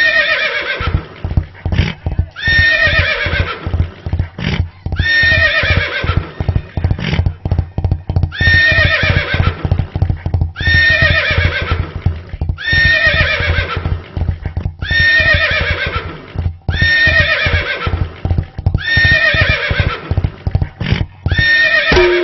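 A recorded horse whinny repeated about every two seconds, each call falling in pitch, over a fast galloping tabla rhythm.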